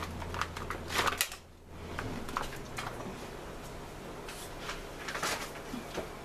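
Clams poured from a plastic bag into a stainless steel pot of heating white wine: the shells clatter against the pot and each other in a quick run of clicks over the first second or so. After that come only a few scattered clicks as they settle.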